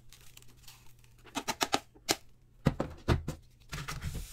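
Hand brush sweeping spilled dust and crumbs across a desk into a plastic dustpan: an irregular run of short scratchy strokes and small clicks, mostly from about a second in.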